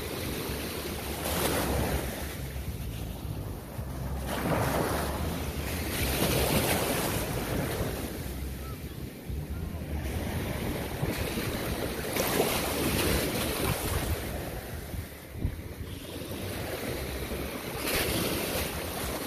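Ocean surf washing around the microphone, swelling and fading every few seconds, with wind rumbling on the microphone.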